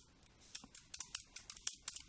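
Faint, quick, irregular keystroke clicks of typing on a computer keyboard.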